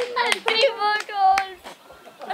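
A few scattered hand claps from a small group of onlookers, mixed with laughing and calling voices, tailing off toward the end.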